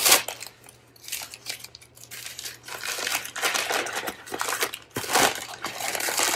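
Crinkly packaging wrap being handled and torn open by hand: irregular crackling and rustling, with louder bursts at the very start and about five seconds in.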